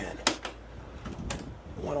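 A few sharp plastic clicks and taps as hands work behind the filter of a Mitsubishi ductless mini-split indoor unit, one about a quarter second in and another just past a second.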